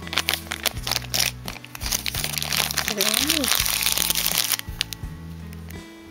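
Thin plastic foil wrapper crinkling and rustling as it is handled and opened by hand. The crinkling stops about five seconds in, over background music with a steady bass line.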